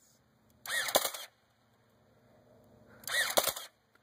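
Motorized Nerf flywheel blaster firing two single darts about two and a half seconds apart, each a short motor whir with the sharp snap of the dart being fired through it. The blaster runs on old Trustfire batteries that are getting real tired.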